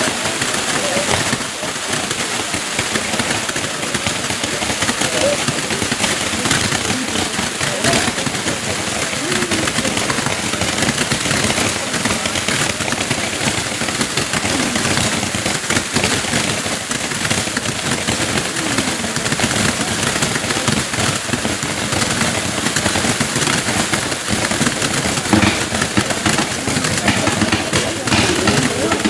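Baroque-style ground fireworks: rows of fountains hissing and crackling while candles fire coloured stars upward, making a dense, continuous crackle of rapid small pops with no pauses.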